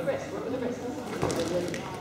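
Faint voices in a sports hall, with one short thud a little past halfway through.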